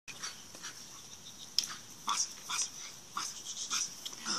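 A leashed dog in bite-work training, lunging at a decoy's bite tug, gives a string of short barks and pants. There is one sharp click about one and a half seconds in.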